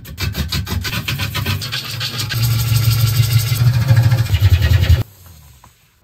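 Wood lathe turning a large, rough bowl blank while a gouge cuts into it: a fast, even rhythm of knocking cuts over the low hum of the spinning lathe. It stops suddenly about five seconds in.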